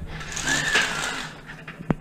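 Horizontal window mini-blinds being pulled up by their cord, the slats rattling as they gather, with a short squeak early on. A single sharp click comes just before the end.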